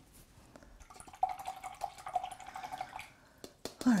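Faint running or trickling water, a steady tone for about two seconds, with scattered small clicks and taps.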